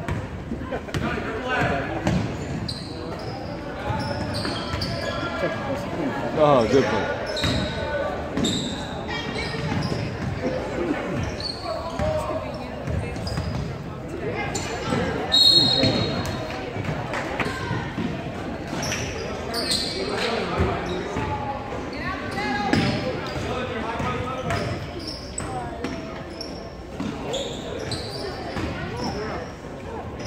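Basketball game in a gym: the ball bouncing on the hardwood floor, short high squeaks from sneakers, and voices of players and spectators calling out, all echoing in the large hall.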